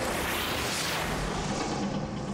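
A loud, noisy rushing sound effect that swells across the whole range, with a rumble under it, layered over dramatic background music.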